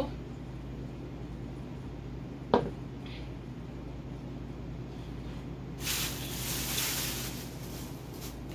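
Someone drinking a smoothie from a plastic blender cup: one short, sharp swallow about two and a half seconds in, then a soft hiss lasting about a second and a half near the end. A steady low hum runs underneath.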